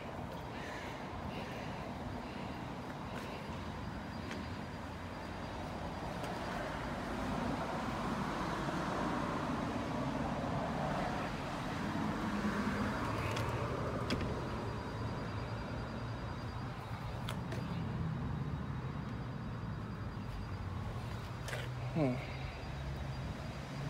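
Steady outdoor road-traffic noise from passing cars, swelling through the middle as a vehicle goes by. A few short sharp clicks come in the second half.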